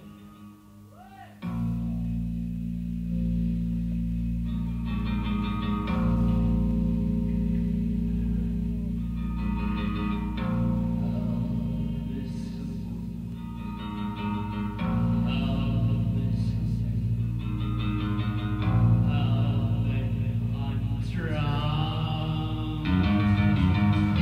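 Live gothic-industrial band music: guitar over a steady low bass drone. It comes in suddenly after a short quiet lull at the start.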